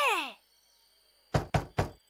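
Three quick knuckle knocks on a door near the end, after a child's short exclamation at the start that rises and then falls in pitch.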